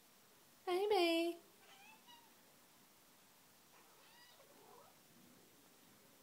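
A long-haired white cat meowing: one loud, drawn-out meow about a second in that dips in pitch at the end, followed by a few fainter, shorter meows.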